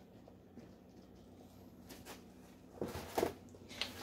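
Quiet room tone, then a few soft, short scraping and squishing sounds near the end as a rubber spatula works a dollop of whipped topping in an aluminium foil pan.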